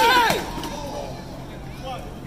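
A sharp knock at the very start, as the elderly man's head strikes the pavement, followed by a short shout. After that come the murmur of voices and street noise.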